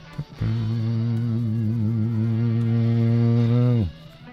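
A man's voice holding one long, low sung or hummed note for about three seconds, wavering slightly and dropping in pitch as it ends.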